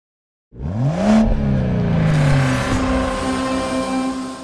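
Intro sound effect of a car engine revving: after a moment of silence it starts about half a second in, its pitch rising sharply, then falling away. It blends into a held synth chord that keeps going, fading toward the end.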